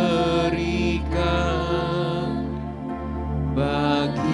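Slow worship music: voices hold long, slightly wavering notes over sustained chords from a Yamaha electronic keyboard.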